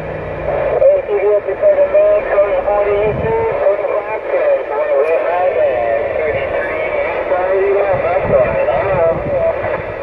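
A distant station's voice received on a Cobra 148GTL CB radio and heard through its speaker: thin, band-limited speech over a steady hiss of static.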